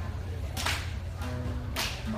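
Acoustic guitar played live with two sharp, percussive strums about a second apart, the strings ringing briefly after each, over a steady low hum.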